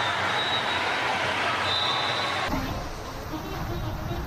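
Indoor waterpark noise of water and voices, then an abrupt cut about two and a half seconds in to the low rushing rumble of a ride down an enclosed waterslide tube.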